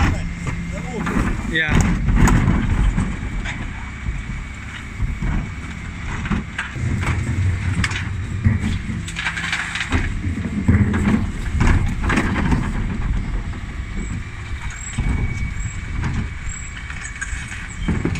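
Dennis Elite 6 bin lorry's Terberg bin lift tipping two wheelie bins into the rear hopper, then lowering them, with the lorry's engine running. A thin steady whine runs under it, and the bins and rubbish make irregular knocks and clatter.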